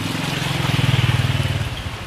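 A motorbike engine passing by, its low pulsing note swelling to a peak about a second in and then fading away, with a hiss alongside.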